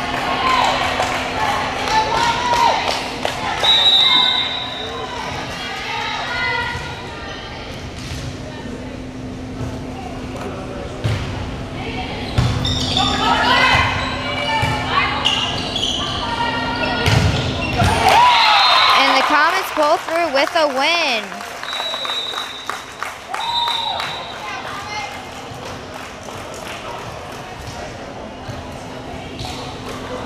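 Volleyball play in a gym hall: ball contacts and sneaker sounds ring out against the crowd's shouting voices. Short high whistle blasts sound a few seconds in and again after the midpoint. The sound changes abruptly a little past halfway.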